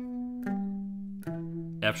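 Clean electric guitar picking three single notes that step down in pitch, each ringing for about half a second or more: B, G, then E, walking an E minor arpeggio back down to its root. A voice comes in just at the end.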